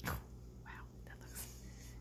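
A short, sudden sound right at the start, then soft whispering.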